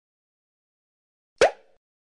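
End-screen animation sound effect: a single short pop with a quick upward pitch, about a second and a half in.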